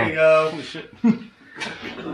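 Speech: a man's voice drawing out a word for about half a second, then a quieter stretch with a short sound about a second in, before talking resumes near the end.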